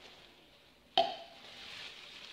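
A short, sharp knock with a brief ring about a second in, then the soft rustling of a plastic bag being handled.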